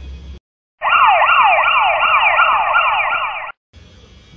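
Siren sound effect edited into the soundtrack: a loud electronic siren sweeping up and down in pitch about three times a second. It starts abruptly just under a second in, after a moment of dead silence, and cuts off suddenly shortly before the end.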